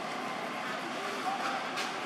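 Steady outdoor background noise with faint, distant voices, and a brief soft hiss near the end.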